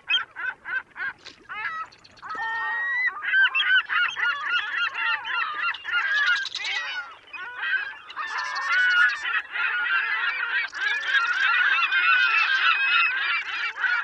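A flock of geese honking: a few separate honks at first, then from about two seconds in a dense chorus of many overlapping honks.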